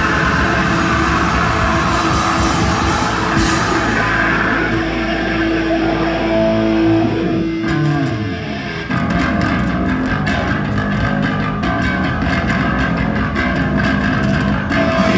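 Hardcore punk band playing live: distorted electric guitars, bass and drums. About halfway through, a long held note slides down in pitch and the music briefly thins, then the full band comes back in about nine seconds in.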